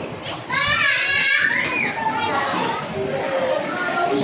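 Children playing and calling out in an indoor play area, with a loud, high-pitched child's voice from about half a second in, rising in pitch before it stops at about two seconds.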